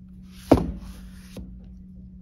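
A single knock as a clay-wrapped, paper-covered bottle is set upright on a canvas-covered work board. It is followed by a brief rustle of hands on the paper and clay, and a second small tap.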